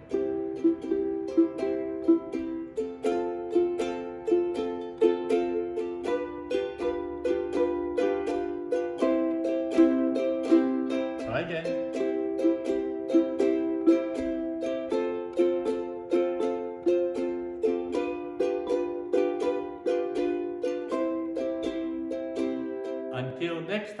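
Ukulele picked one note at a time in a steady, even run of notes, the chord under the picking pattern changing every few seconds.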